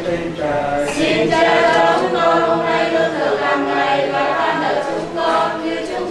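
A group of people singing a hymn together, several voices holding long notes in unison.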